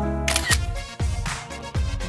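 A phone camera shutter click about a quarter second in, over soft background music.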